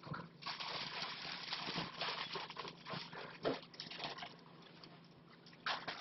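A plastic shopping bag rustling and crinkling in irregular bursts as a rug is pulled out of it and handled. It dies down in the last second or two.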